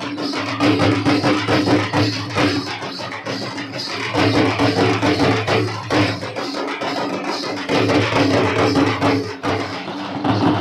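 Live Gondi Dandari dance music: drums beating a dense, steady rhythm with a sustained droning tone held underneath.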